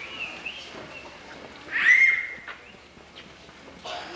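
A young child's high-pitched squeal about two seconds in, preceded by shorter high-pitched calls at the start, over low room noise.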